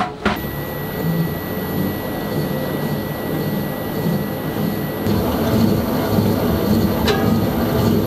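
Commercial stand mixer switching on about a third of a second in and running steadily with a thin high motor whine, its dough hook turning through dry flour for noodle dough. A single click near the end.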